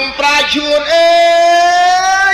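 Male voice singing in the Khmer chapei dong veng style: a few short sung syllables, then about a second in a long held note that rises slightly in pitch.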